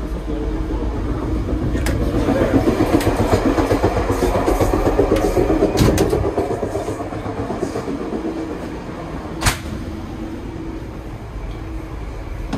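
Running noise of a Tri-Rail commuter train heard from inside a moving coach: a steady rumble and rattle that swells louder for a few seconds, then eases off. There is one sharp click about two-thirds of the way through.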